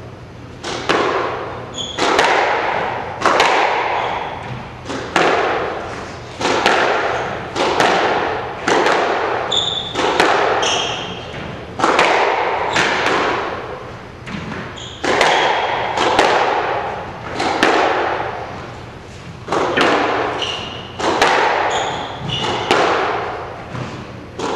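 Squash ball cracking off rackets and the court walls again and again through a long rally, each hit ringing in the court. Short high squeaks of shoes on the wooden floor come between the shots.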